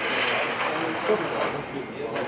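Background noise of a covered market: a steady hiss with faint, indistinct voices in the distance, slowly fading.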